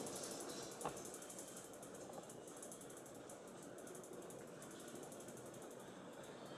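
Quiet room tone with faint, rapid mechanical ticking and one soft click about a second in.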